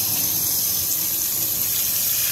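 Kitchen faucet running steadily, its stream splashing over hands and a small toy car into a stainless steel sink.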